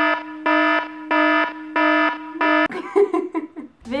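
Electronic alarm-style beeping: a buzzy tone that pulses about five times at an even pace, roughly one and a half beeps a second, and breaks off a little over halfway through.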